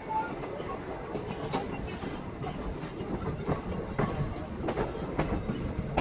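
Indian Railways passenger coach rolling along the track, heard from its open door: a steady rumble with irregular sharp clicks as the wheels cross rail joints.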